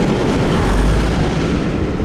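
Railway carriage running at speed, heard from an open window: a steady rumble and rush of wheels and air, with a heavy deep buffet of air on the microphone about half a second to a second in.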